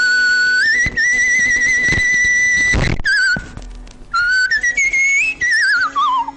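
A man whistling a melody with vibrato. He holds long notes that step up, breaks off about three seconds in, then whistles short rising notes and a falling glide near the end.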